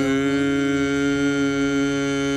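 A man and a woman singing one long held note together, unaccompanied, steady in pitch throughout.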